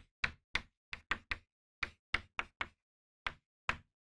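Chalk tapping and clicking against a chalkboard while an equation is written: about a dozen short, sharp taps in an uneven rhythm.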